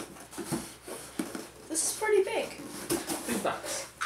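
Cardboard box being handled and opened: short scrapes and rustles of the flaps and the inner box sliding out.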